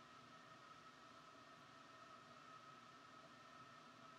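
Near silence: faint steady hiss of room tone, with a faint steady high hum.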